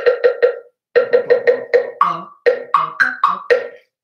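A set of wooden percussion blocks struck with sticks. Four quick strikes on a low-pitched block, a brief pause, then a run of about a dozen strikes stepping between lower and higher blocks. Each block rings at its own distinct pitch.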